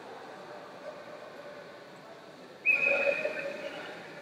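A single steady whistle blast, starting suddenly about two and a half seconds in and lasting about a second, over the low murmur of the hall.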